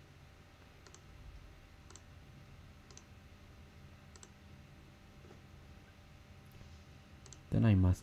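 Computer mouse clicks, single sharp clicks about a second apart, then a quick pair near the end, over a faint steady electrical hum.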